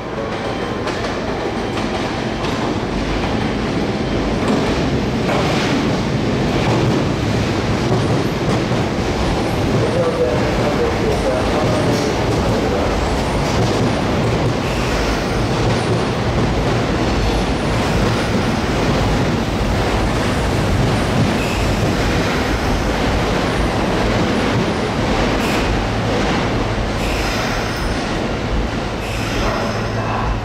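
Sotetsu new 7000 series electric train pulling into the station and slowing to a stop. Its wheels clatter over the points and rail joints, with some wheel squeal, in a steady rumble that lasts the whole time.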